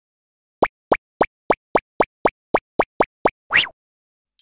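Cartoon sound effects for an animated intro: a quick run of eleven short plops, about three a second, ending in one longer rising pop-like sweep.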